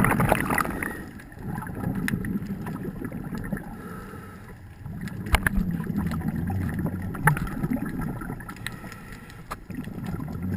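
Muffled underwater noise picked up by a diver's camera: the low rumble of scuba bubbles and regulator breathing, swelling and fading every few seconds, with a few sharp clicks.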